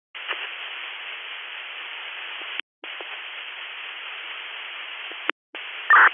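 Hiss and static on an open fire-department two-way radio channel with no voice, cutting out briefly twice, with a short loud burst near the end.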